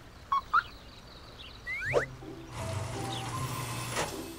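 Cartoon soundtrack effects: two short squeaky blips, a quick sliding whistle-like glide about two seconds in, then a music sting with a steady low note over the second half.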